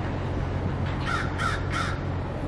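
A crow cawing three times in quick succession, starting about a second in, over a steady low hum.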